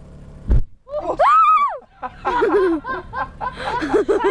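A gasoline-soaked campfire igniting with one sudden short boom about half a second in, followed by a loud high-pitched scream and then a burst of laughter.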